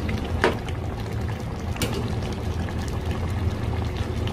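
Thick peanut sauce of a pork kare-kare bubbling in the pan, over a steady low hum, with two sharp clicks, one about half a second in and one near two seconds.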